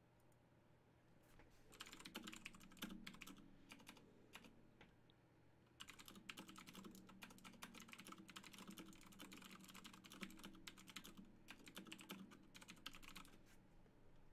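Faint typing on a computer keyboard: a short run of rapid keystrokes starting about two seconds in, a brief pause, then a longer run of fast typing from about six seconds until near the end.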